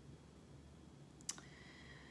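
Near silence: quiet room tone, broken once by a single short click a little past the middle.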